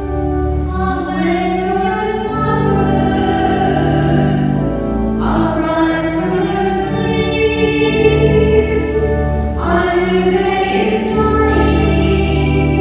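A hymn sung with organ accompaniment: held organ chords over a steady bass, with voices singing phrases that start afresh about five and nine and a half seconds in. It is the entrance hymn at the opening of a Catholic Mass.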